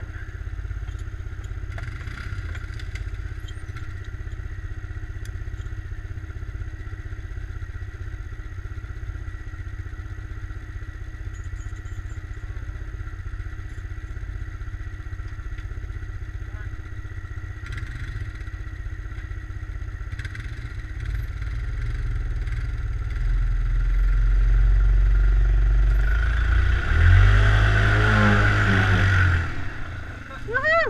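ATV engines idling with a steady low rumble. About two-thirds of the way in they grow louder and rev up and down as the stuck quad is pulled out on a tow strap by another ATV.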